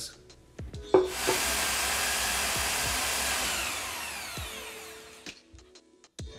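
Large power drill cutting wood plugs from laminated veneer lumber with a plug cutter: it starts abruptly about a second in, runs steadily for a few seconds, then spins down with falling pitch and fades out.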